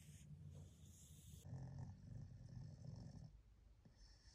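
A pug snoring softly, a low rasping breath that swells about a second and a half in and lasts nearly two seconds.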